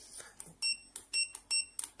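Hikvision DS-KD-KP intercom keypad module giving a short high beep with each key press, about four presses in a second and a half, as a door-entry passcode is keyed in.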